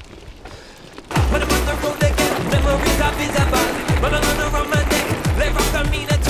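Low rolling noise of bike tyres on a gravel track, then about a second in, music with a deep, pitch-dropping kick beat and a wavering vocal-style melody starts and takes over.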